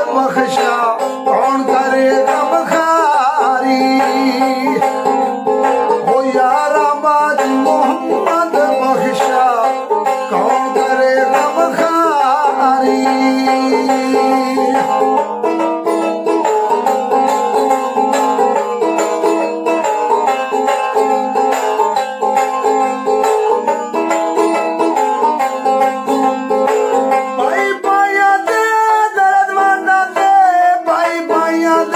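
A man singing Punjabi Sufi verse (kalam) while plucking a tumbi, a one-string folk instrument whose string runs from a long stick neck to a small skin-covered resonator.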